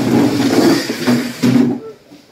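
Men talking loudly in a crowded room, one voice standing out, with a drop near the end.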